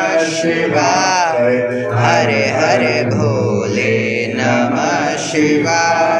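Sanskrit mantras to Shiva chanted by voices in a continuous melodic recitation, the ritual chanting of a Rudrabhishek.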